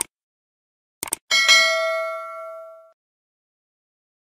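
Subscribe-button animation sound effects: a short click at the start, a quick double mouse click about a second in, then a bright notification-bell ding that rings out and fades over about a second and a half.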